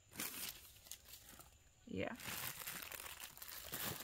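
Crinkling and rustling of plastic grocery packaging being handled: a short rustle at the start, then a longer stretch of crinkling over the last two seconds.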